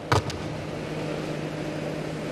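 A steady low hum with even hiss, the background noise of a live microphone and sound system, after one short, sharp sound just after the start.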